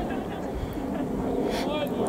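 Wind on the microphone over an open grass pitch, with faint, distant voices of players calling during an amateur football match.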